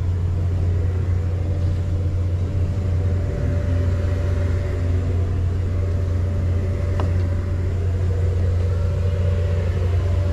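Steady low hum of a car idling, heard from inside the cabin, with a single sharp click about seven seconds in.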